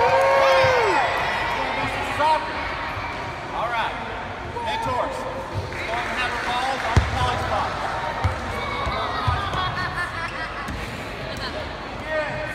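Children's voices calling out and shouting, loudest in the first second, with soccer balls bouncing and thudding on a hardwood gym floor; one sharp thud about seven seconds in stands out.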